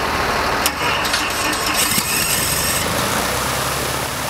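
Single-engine piston light aircraft running at low power on the ground, engine and propeller making a steady, loud drone. A few light clicks sound in the first two seconds.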